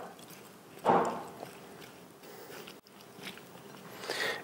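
A spoon stirring an oil-dressed tomato-and-onion salad in a glass bowl: one louder swish about a second in, then faint small clicks and scrapes.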